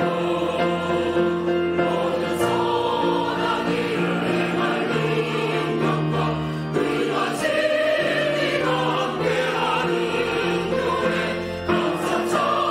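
A mixed church choir of men and women sings a slow introit hymn in Korean in sustained chords. A phrase closes just before the end and the next one begins.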